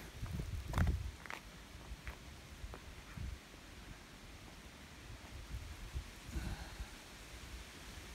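Footsteps on a pavement strewn with dry leaves and shed bark: a few light steps over the first three seconds or so, then a faint steady outdoor background.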